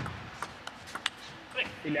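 A table tennis ball being served and struck in a short rally: a sharp click at the start, then four or five quick clicks of ball on bat and table over the next second. A voice rises near the end as the point is won.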